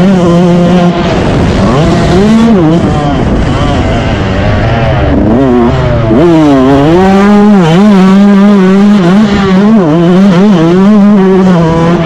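Motocross bike engine heard from the rider's onboard camera, revving hard and varying constantly with the throttle. Its pitch drops away briefly a couple of times, about a second in and again around five seconds in, then climbs back up, over a low rumble of wind and track noise.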